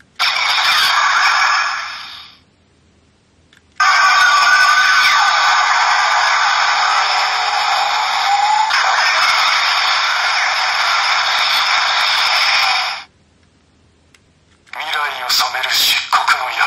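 Voice clips and electronic sound effects from the Black Spark Lence toy's small built-in speaker, thin and without bass. They come in three bursts: a short one at the start, a long one of about nine seconds, and another near the end.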